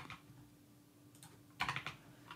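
Computer keyboard keystrokes while editing code: a click at the start and a short cluster of clicks about a second and a half in. A faint steady hum sits underneath.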